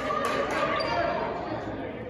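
A basketball bouncing several times on a hardwood gym floor, echoing in the large gym, over people's voices and chatter.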